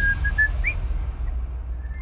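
A man whistling a few short notes, the last one sliding upward, over a steady low drone.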